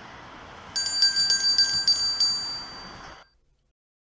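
A small bell rung with about six quick strikes, starting just under a second in, over steady background noise. All sound cuts off suddenly about three seconds in.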